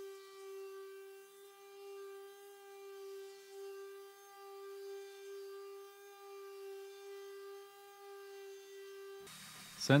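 Square-pad palm sander running on a spalted maple and purpleheart board: a steady, even-pitched whine held at a low level, which cuts off suddenly near the end.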